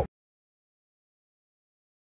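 Complete digital silence: a man's Spanish race commentary cuts off at the very start and nothing follows.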